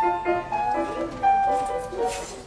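Steinway grand piano playing a classical sonata passage in D major: single notes and small chords struck one after another, growing sparser and softer toward the end.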